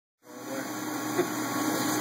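A powered-up Daewoo Lynx 200LC CNC lathe idling with a steady mechanical hum, fading in quickly a moment after the start.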